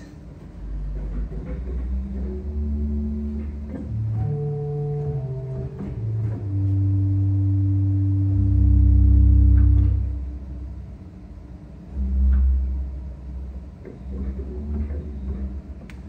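Low pedal notes on the 10⅔-foot bass quint stop of a 1926 Estey pipe organ, a slow series of held notes that step from pitch to pitch. The loudest note comes about halfway through and is held for a few seconds.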